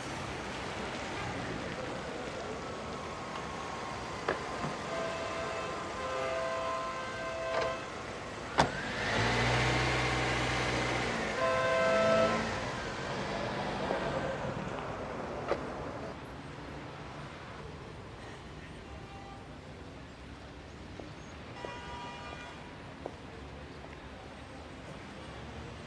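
Street traffic on a wet road: a car passes close and loudest about nine to twelve seconds in, with its engine note and pitch sweeping as it goes by. A few short steady tones sound over the traffic, and it quietens from about sixteen seconds on.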